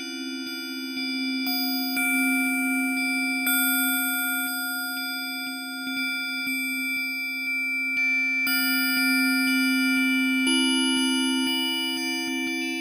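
Synthesizer playing a strange bell-like patch, pure sustained tones, in a slow improvisation. A low pair of notes is held throughout, while higher notes enter every few seconds and ring on under them.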